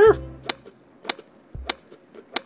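Light clicks and taps of hard plastic Playmobil toy pieces being handled, a groomer figure with its toy comb against a plastic poodle and grooming table, about three short clicks spaced just over half a second apart.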